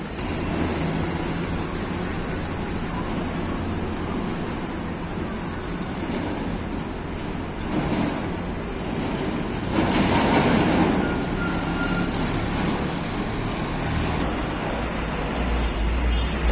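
Road traffic passing steadily on a highway, with louder vehicles going by about eight and ten seconds in.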